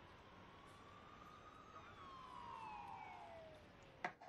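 Faint siren wail: a single tone that climbs slightly, then slides steadily down in pitch over about the last two seconds.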